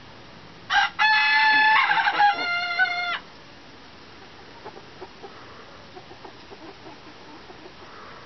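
A rooster crowing once, loud, starting under a second in and lasting about two and a half seconds: a short opening note, then a long drawn-out note that steps in pitch before cutting off.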